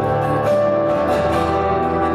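A live worship band playing a contemporary worship song: strummed acoustic guitar, electric guitar and keyboard over drums, steady throughout.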